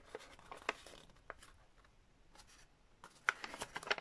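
Paper pattern pieces being handled and folded by hand: faint paper rustling with scattered light clicks, a little busier about three seconds in.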